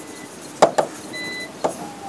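A few sharp taps and clicks of a pen on the glass screen of an interactive display as a word is handwritten. A short, faint high tone sounds briefly about midway.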